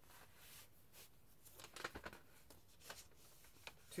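Faint rustling and light clicks of a cardboard LP jacket and its paper contents being handled, a little busier about two seconds in, over quiet room tone.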